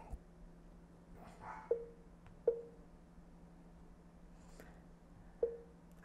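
Three soft, short taps on an iPad touchscreen, spaced irregularly and each with a brief ring, as the app's row counter is stepped forward, over a faint steady room hum.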